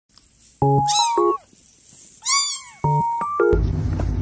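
A kitten meowing twice, each meow a high cry that rises and falls, over short flat musical tones. A fuller, bass-heavy music track comes in near the end.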